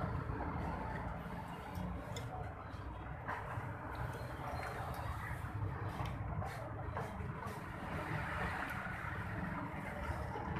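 Steady low rumble of road traffic, with a few faint clicks of spoons and forks against bowls.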